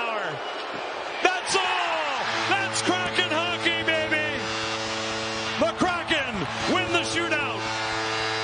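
Excited voices shouting over the arena crowd as the game-ending shootout save is made, then music with a steady held chord starts about two seconds in and carries on under the voices.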